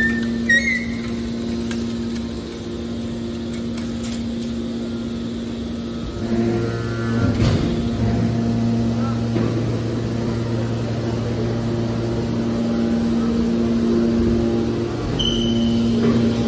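Hydraulic scrap-metal baler running: a steady hum from its hydraulic power unit, joined about six seconds in by a deeper drone as the system goes under load to move the ejection ram, with a single clank about seven and a half seconds in.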